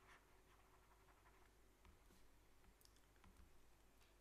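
Near silence, with faint clicks and light scratches of a stylus writing on a tablet.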